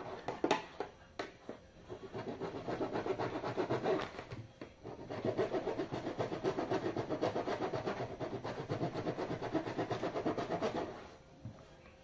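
A blunt kitchen knife sawing through the wall of a plastic 5-litre jug: a few separate scrapes at first, then quick back-and-forth rasping strokes, several a second, with a short break about four seconds in. The knife is blunt, so it cuts the plastic slowly.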